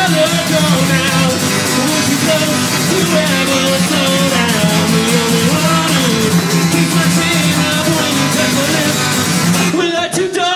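A man singing with a strummed acoustic guitar, played live as a solo country-rock song at a steady loudness.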